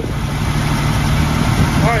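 Mercruiser 4.3 V6 marine engine idling steadily on its newly fitted Delco EST electronic ignition.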